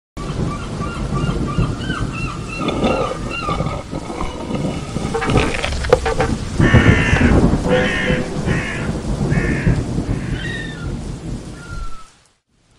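Birds calling over a steady, rumbling background noise. There are small chirps in the first half, then about five louder, harsh calls in the second half.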